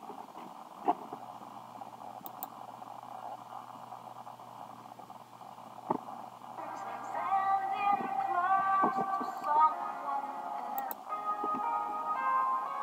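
A song with a singer played back from a computer and heard through its speaker in the room: first a steady hiss with a couple of sharp clicks, then from about halfway the music and singing come in and grow louder.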